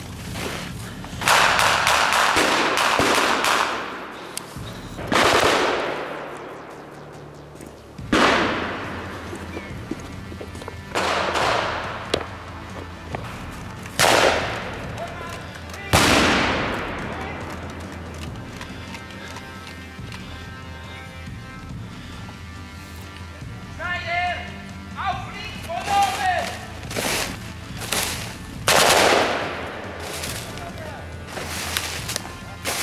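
Blank gunfire from reenactors' rifles and machine guns in a snowy forest. A long burst comes about a second in, then single shots and bursts every few seconds, each echoing off through the trees. A man shouts around the 24-second mark, and a quick run of shots follows near the end.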